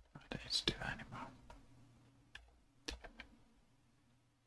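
Computer keyboard keys clicking, a few separate presses near the start and a short cluster about three seconds in. A brief whispered mutter comes in the first second.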